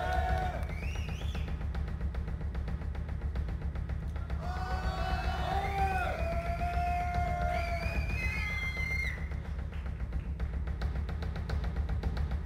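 Live band music led by a drum kit played with dense, fast strokes over a heavy, steady bass. A bending melodic lead line comes in from about four and a half to nine seconds.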